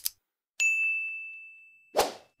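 A single bell-like notification 'ding' sound effect: one sharp high strike about half a second in, ringing on one steady high tone and fading away over about a second and a half. A short sharp click comes at the very end.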